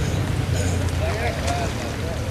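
Indistinct talk of several people in the distance over a steady low rumble.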